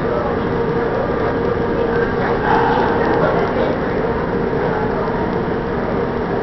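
Indistinct voices over a steady hum in a large indoor hall, a little louder briefly around the middle.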